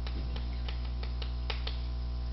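Chalk striking and tapping on a blackboard while characters are written: about seven short, sharp clicks at an uneven pace, over a steady low electrical hum.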